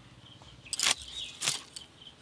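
Two brief sharp noises from hands preparing food, about a second in and again half a second later, with faint bird chirps behind.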